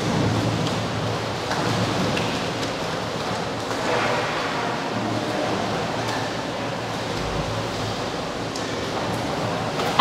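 Steady rush of running water with a few faint splashes and knocks as coho salmon are sorted and tossed into water-filled tanks.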